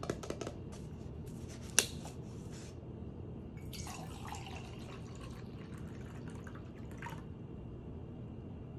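A plastic lid clicks and snaps off a paper cup, the sharpest sound, a little under two seconds in. About a second and a half later a drink is poured from the paper cup into a stainless-steel tumbler, a splashing pour lasting about three seconds.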